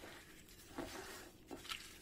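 Raw minced meat with fine bulgur and spices being kneaded by hand in a glass bowl: faint, irregular sounds of the mixture being squeezed and pressed, a little louder about a second in.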